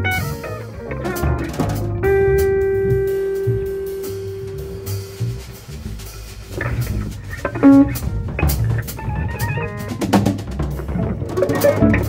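Live instrumental trio music on headless Teuffel Tesla electric guitar, upright double bass and drum kit. About two seconds in, a single guitar note is held for roughly three seconds while the band thins out, and then the drums and plucked notes pick up again around halfway through.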